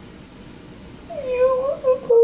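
A woman crying: after a quiet first second, a high, wavering cry that rises and falls.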